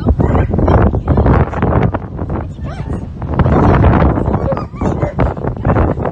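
Greyhound pup yipping and whining in play, over loud, rough, scuffling noise. A short cry that rises and falls comes about three seconds in.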